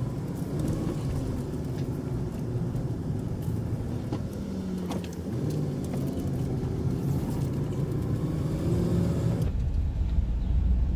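Cargo van engine and road noise heard from inside the cab while driving slowly through town. The engine note drops about halfway through as the van slows for a turn, then rises again as it pulls away.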